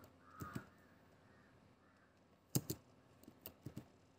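Computer keyboard keystrokes: one sharp key press a little past halfway, then a few lighter taps close together. A brief faint sound is heard in the first second.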